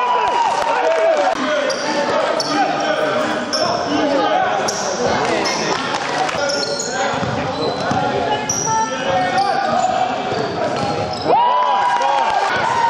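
Basketball game sounds echoing in a large sports hall: a ball bouncing on the court floor, sneakers squeaking, and players and spectators calling out. A long steady tone starts near the end.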